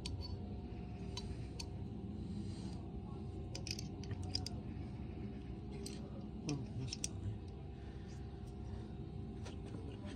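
Small metal parts clicking and clinking as they are worked by hand off the gearbox shaft of a split KX85 crankcase: scattered sharp clicks, with a quick cluster about four seconds in and a few more near the end.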